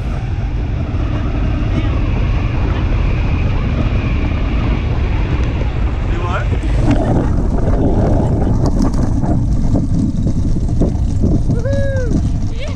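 Wind rushing and buffeting on a hang glider's wing-mounted camera microphone as the glider skims low over grass to land. A short rising vocal sound comes a little after six seconds, and a brief voiced exclamation comes near the end.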